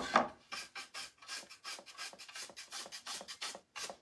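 A stiff chip brush dry-brushing paint onto wooden plank boards in quick back-and-forth scrubbing strokes, about five a second, opening with one louder stroke.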